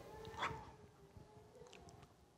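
A faint, high-pitched, choked whimper from a man crying, with a brief catch of breath about half a second in, then a thin wavering tone that dies away.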